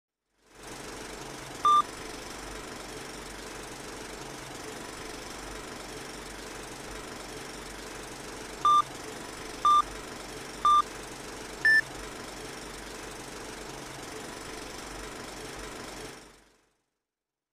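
Old-film countdown leader sound effect: a steady film-projector whir with crackle, broken by short beeps. One beep comes about two seconds in, then three more a second apart as the count runs down, and a final beep at a higher pitch.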